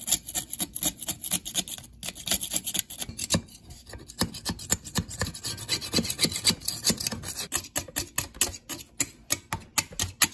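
A hand-held blade scraper scraping flaking paint and rust off an old vise, in quick, short, irregular strokes, several a second.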